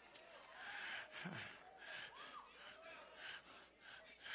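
A quiet pause in a preacher's sermon: a sharp click, then a breath drawn near the microphone and a brief low vocal sound, with faint voices in the background.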